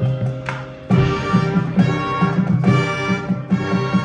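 High school marching band playing its competition field show: sustained brass and woodwind chords over a steady pulsing beat. The music dips briefly, then the full band comes back in loudly about a second in.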